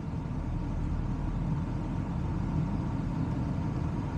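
Steady low rumble of a car driving along a road: engine and tyre noise.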